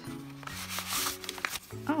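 Paper rustling and crinkling as a folded letter is opened and unfolded, over soft background music.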